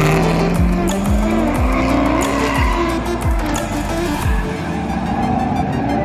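Chevrolet C5 Corvette's V8 revving with tyres squealing as the car drifts, heard together with background music that has a regular beat, which stops about four and a half seconds in.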